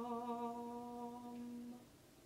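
A male cantor's voice holding the last note of a Latin plainchant introit, unaccompanied, with a slight waver, fading and ending just before two seconds in.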